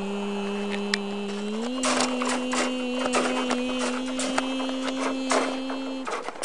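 A person's voice humming one steady note, which steps up in pitch about a second and a half in and is then held. From about two seconds in, quick irregular clicks and rattles of objects being handled sound over the humming.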